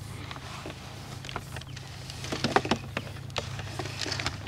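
Insulated electrical wires being drawn off loose coils and pulled into a PVC conduit fitting: scattered light clicks and rustles, bunched up about two and a half seconds in, over a steady low hum.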